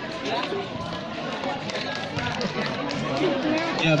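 Indistinct chatter of several people talking at once close by, with no one voice standing out.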